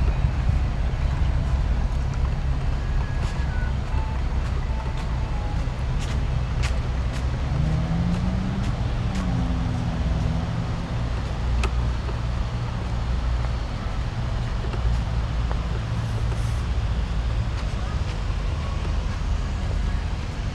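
Steady low rumble of road traffic on a city street at night, with a few sharp clicks and a short wavering pitched sound about halfway through.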